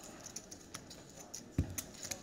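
Faint, scattered clicks of poker chips being handled and pushed across the table, with one dull thump about one and a half seconds in.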